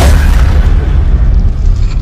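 Cinematic intro sound effect: a loud, deep bass boom hits right at the start, and its low rumble carries on.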